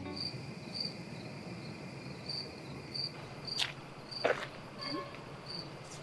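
Crickets chirping at night, short high chirps about twice a second, with a few faint sharp clicks in between.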